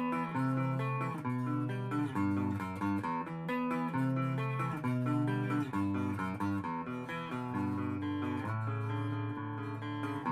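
Schecter V1 Apocalypse electric guitar with USA Apocalypse-VI humbuckers, through an EVH 5150III amplifier and a Panama 2x10 cabinet. It plays a melodic passage of held notes and chords, changing about every half second to a second.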